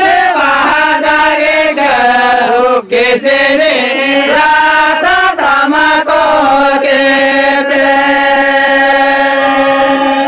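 A group of men chanting a song together in long drawn-out notes, the pitch sliding from note to note and then held on one steady note over the last few seconds.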